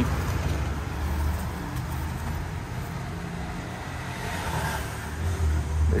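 Steady low rumble of a motor vehicle, with no sharp events.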